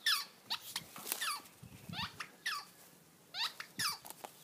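A dog's rubber squeaky ball squeaking over and over as she bites down on it, about ten short squeaks, each falling in pitch, in irregular quick clusters.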